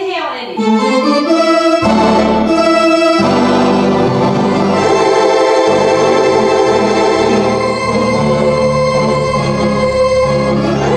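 Roland Atelier home organ playing a big ending: a quick falling run of notes, then full held chords, with deep pedal bass coming in about two seconds in and a chord change a second later, sustained loudly through the rest.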